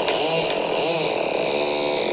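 Electronic synthesizer music without drums: pitched tones bending up and down in short arcs about twice a second over a steady dense drone.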